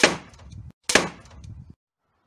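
Two pistol crossbow shots about a second apart, each a sharp crack as the bolt is loosed and hits the screen of an LCD television, with a short fading rattle after each.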